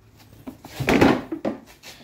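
Plastic latch on a Hilti VC 40-MX vacuum being released and the head lifted off its tank: a rubbing scrape that builds to a peak about a second in, then a couple of sharp clicks.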